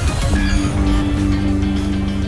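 Background music for an edited title sequence, with a quick swoosh at the transition. A steady low two-note drone then sets in a fraction of a second later and holds.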